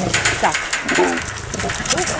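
Young lions and tigers vocalizing while they crowd against a wire-mesh cage for meat, with short clicks and rattles throughout.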